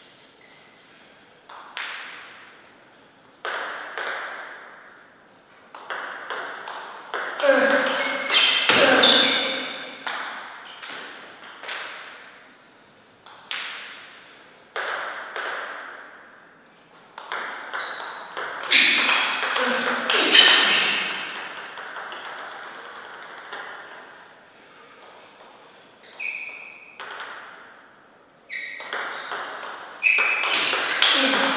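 A celluloid-type table tennis ball clicking off rackets and the table in rallies: sharp single ticks a fraction of a second apart, with two busier, louder stretches of quick exchanges.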